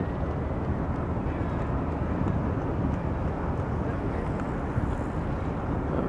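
Steady low rumble of distant jet airliners flying overhead.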